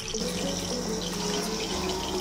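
Hot oil with spices sizzling steadily in an aluminium pot.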